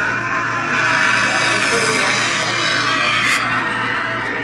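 Music with some voice from a short video playing on a phone, heard through the phone's small speaker, steady throughout.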